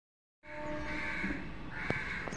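A bird calling twice outdoors, about half a second each, with a sharp click near the end.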